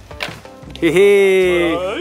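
A voice holding one long, loud note for about a second, over background music.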